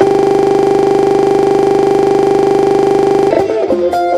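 A steady, loud buzzing drone for about three seconds: a recording glitch in which a tiny slice of the kora music repeats over and over. Near the end it breaks off and plucked kora notes come back.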